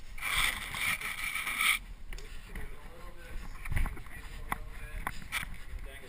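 Rope and metal rappel hardware being handled at a belay device: a rush of noise for the first couple of seconds, then scattered light clicks and rustling. Faint voices are heard under it.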